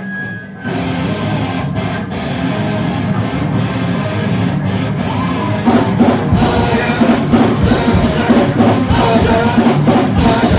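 Hardcore punk band playing live on a raw bootleg recording as a song starts. The music comes in about a second in and gets clearly louder about halfway through as the full band kicks in.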